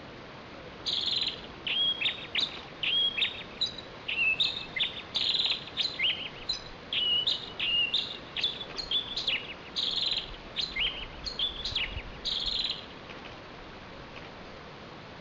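A bird of prey calling: a long series of shrill whistled notes, many sliding down in pitch and then holding, repeated over about twelve seconds before stopping near the end.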